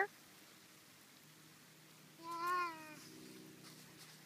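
A single short spoken "yeah" with a rising-then-falling pitch about two seconds in, over a faint steady low hum.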